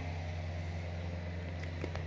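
Steady low mechanical hum, even and unchanging.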